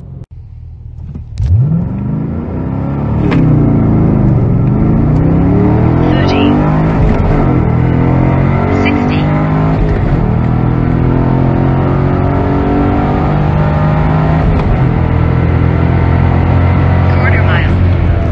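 Chevrolet Camaro SS 1LE's 6.2-litre V8 at full throttle through a quarter-mile run, heard from inside the cabin with the windows up. It launches about a second and a half in, then its pitch climbs steeply through each gear and drops back at each upshift, running loud and steady at high speed near the end.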